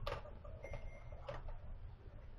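Two sharp clicks about a second and a quarter apart, with a faint brief tone between them, over a steady low hum.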